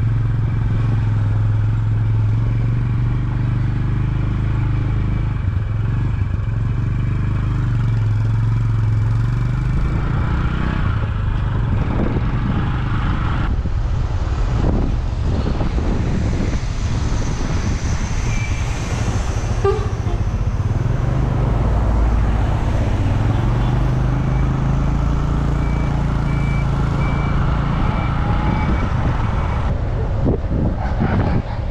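Motorcycle engine running steadily while riding along a road, its low hum dropping away about a third of the way in and returning later as the engine speed changes.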